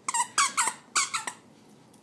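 Squeaker in a plush dog toy squeaking as a Chihuahua bites and chews it: about five short squeaks in two quick runs, then it stops about a second and a half in.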